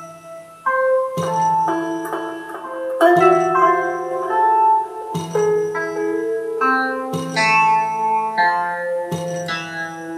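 Experimental electronic music from synthesizer and a Bastl Instruments Micro Granny 2 sampler: sitar-like plucked chords, each struck and left ringing, with a new chord about every two seconds.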